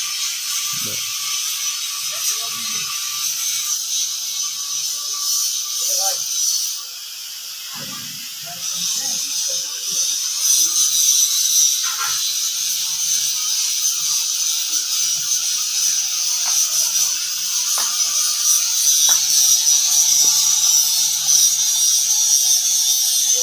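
Steady, high-pitched rasping hiss with faint distant voices under it. The hiss dips briefly about seven seconds in and returns louder.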